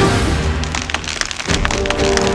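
Dramatic background music with cracking, splintering wood sound effects as a tree is toppled.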